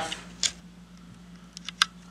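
A few light clicks and taps from a pencil and tape measure being handled on a plywood sheet while a cut line is marked. One comes about half a second in, and a quick cluster follows just before two seconds, the sharpest of them. A faint steady hum runs underneath.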